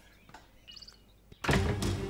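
A wooden door being opened: faint clicks and a short, high hinge squeak, then a sudden loud sound about one and a half seconds in.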